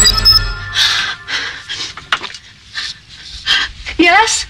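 A woman panting: a series of quick, heavy breaths, roughly one every half second, starting just after a tune cuts off in the first half-second.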